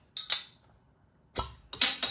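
Metal bottle opener on the crown cap of a 330 ml glass beer bottle: two light clicks as it is fitted, then two sharper metallic snaps about a second and a half in as the cap is prised off.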